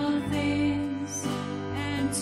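Live worship band playing a slow worship song with female voices, violin and cello over a steady accompaniment.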